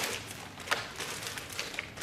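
Plastic letter pieces clicking and tapping against the plastic tray of a toy alphabet case as they are handled and fitted into their slots: a sharp click at the start and another under a second in, then a few fainter taps.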